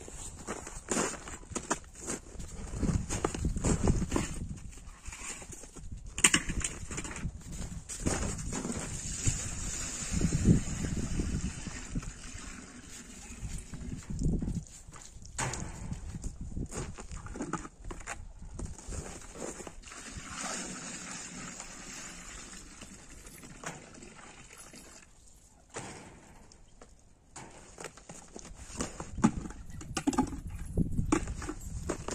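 Goats bleating now and then, with footsteps in snow and a plastic tub being handled.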